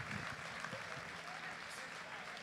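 Faint scattered audience applause with low crowd chatter.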